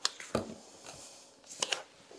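A sheet of sulfite paper handled and laid flat on a plexiglass sheet: a few short rustles and taps, one near the start, one about a third of a second in and a last one about a second and a half in.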